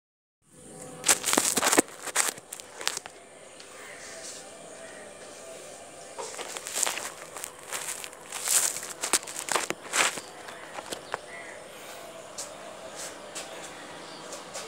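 Scattered sharp knocks and rustles, loudest and most frequent about a second in and again around the middle, over a steady faint hiss: handling noise from the moving phone.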